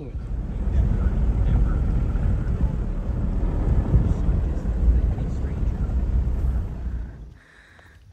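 Wind buffeting the microphone: a loud, uneven low rumble that dies away about seven seconds in.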